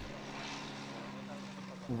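Twin-engine propeller plane taxiing, its engines running with a steady drone.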